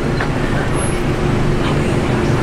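Steady road traffic noise dominated by a low, even engine hum, like a vehicle idling.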